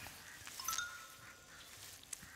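Faint, soft chime-like tones: a few short high notes about half a second in, over a quiet background.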